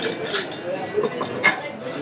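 A few sharp glassy clinks as a glass mixing glass full of ice is handled and set down on the bar, over voices in the background.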